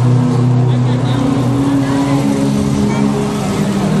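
Background music of sustained keyboard chords, held steady and moving to a new chord about halfway through.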